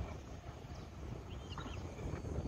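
Quiet open-air background with a low rumble, and a few faint high chirps about one and a half seconds in.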